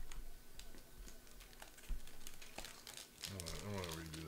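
Clear plastic wrapping on a trading-card box crinkling and crackling, with many small sharp clicks, as the box is being unwrapped. A short hum or word from a man's voice comes in near the end.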